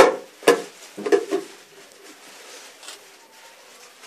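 A bowl knocking on the floor as it is handled and set down: a few sharp knocks in the first second and a half, then quiet room noise.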